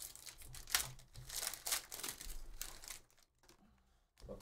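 Foil wrapper of a Panini Phoenix football card pack being torn open and crinkled by hand. The crackling runs for about three seconds, then fades to faint handling.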